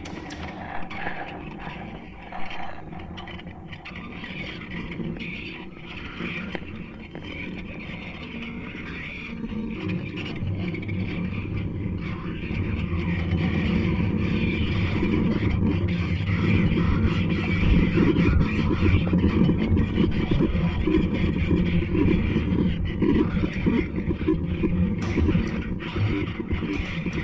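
Live experimental electronic noise music played from a laptop: a dense noisy texture with no clear melody. A heavy low rumble comes in about ten seconds in and keeps building, so the sound grows much louder toward the end.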